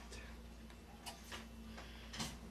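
Faint clicks, two close together about a second in, over a low steady hum.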